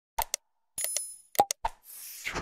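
Sound effects of an animated like-subscribe end screen: two quick mouse clicks, a short high bell ding about a second in, three more clicks, then a whoosh starting near the end.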